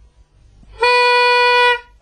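A novelty harmonica blown for one steady held note of about a second, starting sharply and cutting off.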